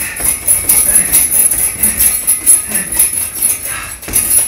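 Gloved punches landing in quick succession on a heavy bag hung from chains, the chains jangling and rattling with each blow.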